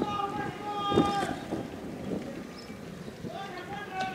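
Several drawn-out shouts and calls from men in the street over the low, steady running of an armoured vehicle's engine, with one loud thump about a second in.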